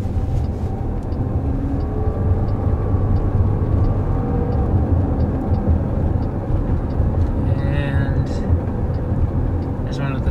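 Cabin road noise of a Chrysler Pacifica minivan driving at road speed: a steady low rumble of tyres and drivetrain, with a faint whine that slowly rises in pitch over the first few seconds.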